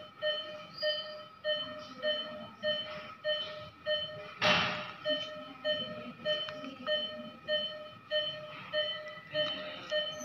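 Medical equipment beeping: a steady run of short electronic beeps of one fixed pitch, about two a second. A brief rustling hiss cuts across the beeps about four and a half seconds in.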